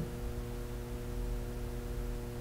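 Steady electrical mains hum, several even tones stacked together, over a faint hiss. This is the room tone of the recording in a gap between speech.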